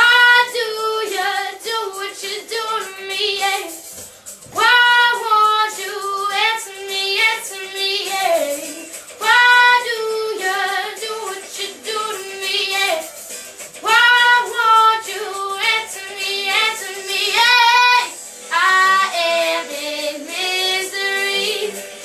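An eleven-year-old girl singing a song solo, in phrases of held notes with vibrato and short breaths between them.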